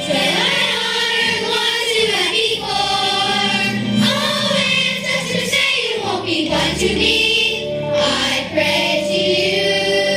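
A children's chorus singing a stage-musical number, in continuous phrases with held notes.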